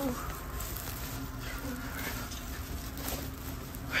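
Rumbling handling noise from a phone carried at walking pace, over a faint steady hum.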